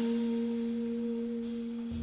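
A single low note held at the end of a jazz tune, ringing out and slowly fading, with a fainter overtone above it.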